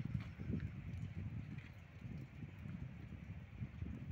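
Wind buffeting the microphone: an irregular low rumble that swells and dips in gusts.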